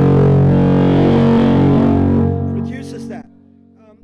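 Electric guitar with its built-in gain control turned up, driving the amp's clean channel into a singing tone: one loud, held chord that sustains for about two seconds, then fades and is cut off about three seconds in.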